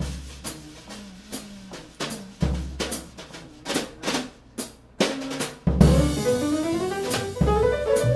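Jazz drum kit played alone with sticks in a solo break: scattered snare and bass drum strokes with short gaps between. About six seconds in, the piano comes back in with a rising run over the drums.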